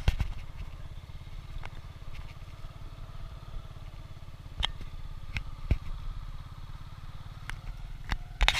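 Boda-boda motorcycle engine running at a steady low speed, an even pulsing rumble, with a few sharp knocks as the bike rides over a dirt road.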